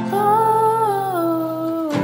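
Wordless male humming of a sustained melody line that steps down in pitch about a second in, over a held acoustic guitar chord.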